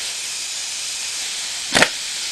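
Air impact wrench on its lightest setting, triggered in one brief burst near the end to snug the driven-clutch nut on a GY6 150cc engine. A steady hiss is heard throughout.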